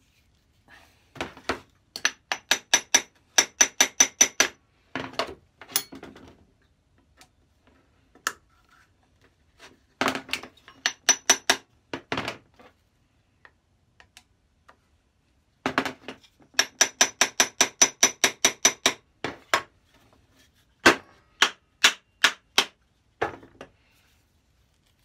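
Small hammer tapping on the metal of a Lewin combination plane to drive out its steel fence shafts, which are stuck fast. Runs of quick, ringing metallic taps, about four a second, come in several bursts with pauses between.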